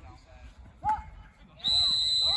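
A referee's whistle blows one long, steady, shrill note, starting near the end and over shouting voices, as play stops around a goal in a lacrosse game. A short shout comes about a second in.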